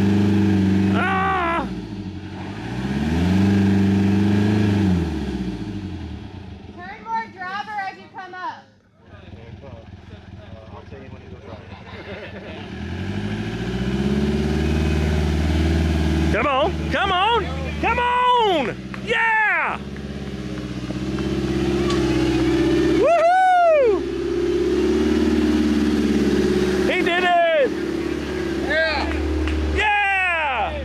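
Land Rover Defender 90's engine labouring and revving as it crawls through a deep rut. The revs rise and fall, fall away to near quiet about nine seconds in, then build again and hold strong for the rest of the climb.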